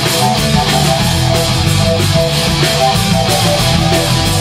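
Live rock band playing loudly: two electric guitars, bass guitar, drum kit and keyboard.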